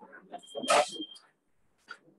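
A single short, loud burst of noise about three quarters of a second in, spread across all pitches, with a thin steady high tone running through it, amid faint scattered background sounds.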